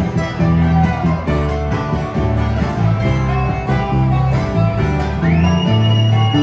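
Live bluegrass string band playing an instrumental break: acoustic guitars picking and strumming, with mandolin and a steady bass line. About five seconds in, a fiddle slides up into a long high note and holds it.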